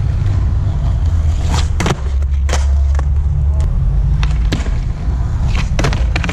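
Skateboard on concrete: the truck grinding and the wheels rolling along a concrete ledge and ground in a steady low rumble. Several sharp clacks of the deck striking the concrete mark a bailed 5-0 bigspin out.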